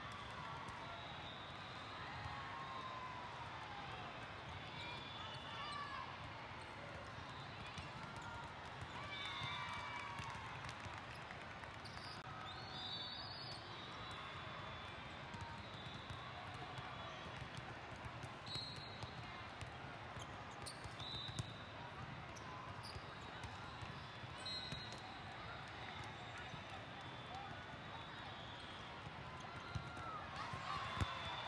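Indoor volleyball tournament hall ambience: a steady wash of voices from players and spectators across many courts, with balls being struck and bouncing and short squeaks of court shoes scattered throughout.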